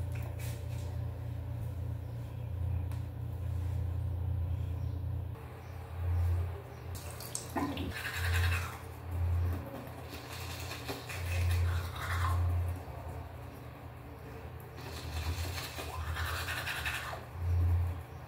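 Teeth being brushed with a manual toothbrush: uneven stretches of scrubbing, the clearest about a third of the way in, near the middle and near the end. A steady low hum runs under the first five seconds.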